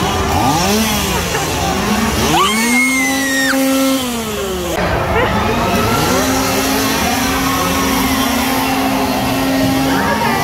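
Chainsaw engine being revved: its pitch swings up and down, climbs and holds high from about two and a half seconds, drops off around four seconds, then is held steady again from about six seconds on.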